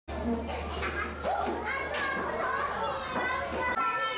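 Schoolchildren chattering in a classroom, many young voices overlapping, over a steady low hum that stops just before the end.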